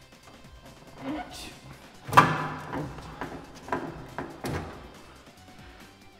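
Sheet-metal front casing of a wall-hung gas boiler being pulled off: a few clunks and metallic knocks as the panel shifts, the loudest about two seconds in with a brief ringing, another about four and a half seconds in.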